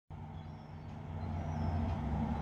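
Motor vehicle engine running in the street below, a steady low hum that grows a little louder.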